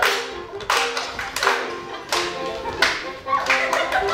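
Lively dance tune on piano with hands clapping along in a steady rhythm, about one and a half claps a second.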